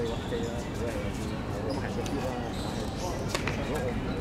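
Players' voices calling across a football pitch over steady low background noise, with one sharp knock about three seconds in, typical of a football being kicked.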